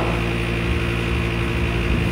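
A steady low droning hum with no change in pitch or level.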